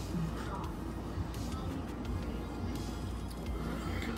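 Quiet background music.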